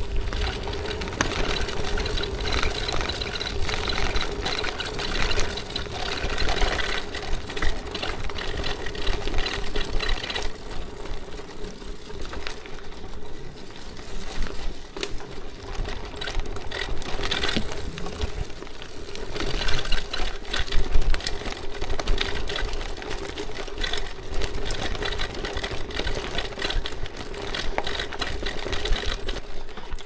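Bicycle ridden over a bumpy gravel and grass track: tyres crunching and the bike rattling over stones, under a steady mechanical whine.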